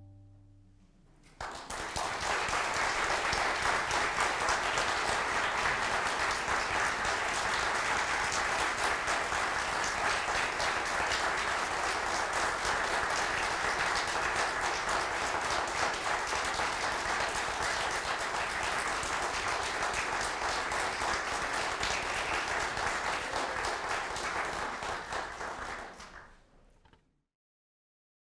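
Audience applauding steadily after a string quartet finishes. The last low string note dies away in the first second, the clapping starts about a second and a half in, and it fades out at the very end.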